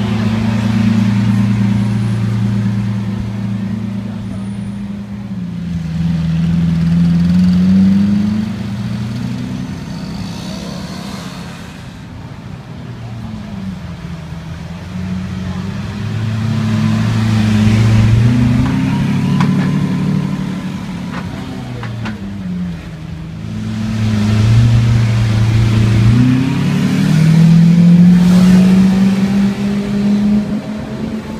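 Lamborghini Aventador Roadster's V12 engine idling and revved up several times, its pitch climbing and falling with each rev. Near the end it climbs steadily as the car pulls away.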